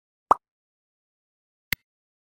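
Two short sound effects over silence: a soft pop about a third of a second in, then a brief sharp click, like a mouse click on the subscribe button, near the end.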